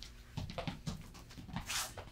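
Quiet movement with a few light scuffs, then a quick breath in near the end.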